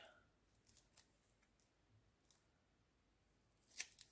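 Near silence with a few faint ticks, then one short, crisp handling sound near the end, from paper craft materials being moved about on a work desk.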